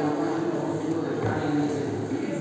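Indistinct voices in a large gym hall, with background music.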